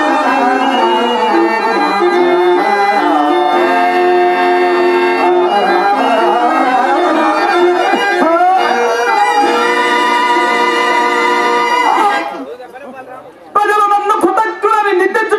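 Stage accompaniment music playing long, held melodic notes, which stop abruptly about twelve seconds in. After a brief lull, voices start talking just before the end.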